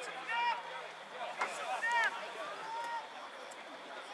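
Distant shouting from players across a soccer field: a few short, separate calls. There is one sharp knock about a second and a half in.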